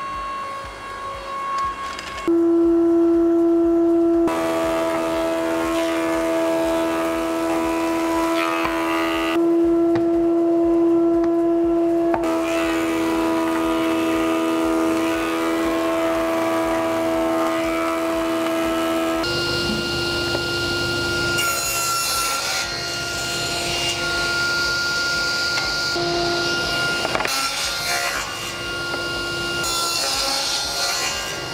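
Stationary woodworking machines running in a workshop. A steady, constant-pitched machine hum carries most of the first two-thirds. About two-thirds in it gives way to a higher-pitched machine with the hiss of wood being cut, a sliding table saw cutting boards near the end.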